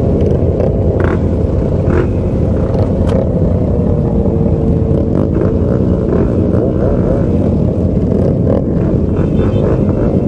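A crowd of sport motorcycles idling together at a stop, a dense steady engine rumble with no let-up.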